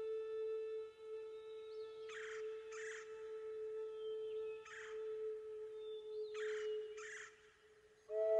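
A held, steady musical drone note runs under five short, harsh bird calls, mostly in pairs. The drone fades away near the end.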